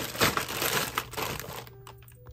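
Plastic zip bag full of cardboard jigsaw puzzle pieces crinkling as hands squeeze it and set it down into the box, the pieces shifting inside. It is loudest at first and dies away in the last half second.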